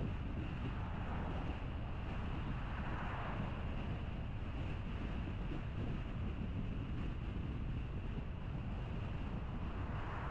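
Steady rumble of tyre and wind noise from a car driving along at moderate speed, with two brief swells, one about three seconds in and one near the end.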